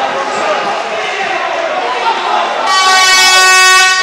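Timekeeper's hooter sounding one loud, steady tone for a little over a second near the end, over voices and court noise at an indoor hockey match; it signals a stop in play.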